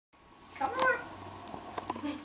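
African grey parrot giving one short call that bends in pitch, followed by a few faint clicks near the end.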